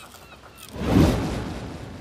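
A single whoosh sound effect at a scene change: a noisy swell that rises quickly about a second in and fades away over the following second.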